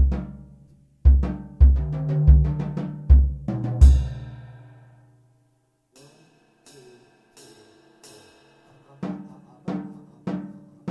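Acoustic jazz drum kit played with sticks, a four-bar solo phrase. It opens on one heavy stroke, then a run of five loud, deep drum strokes that ring on and fade out over about a second. After a few light, quiet strokes, heavier drum strokes come back near the end.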